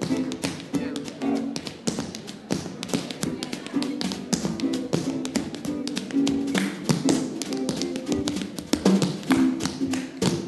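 Tap shoes striking a wooden stage in quick, dense rhythms over music from a resonator guitar strumming repeated chords and a snare drum.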